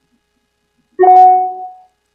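A single electronic chime from the video-call software: a sudden pitched note with its octave above, sounding about a second in and fading out within a second.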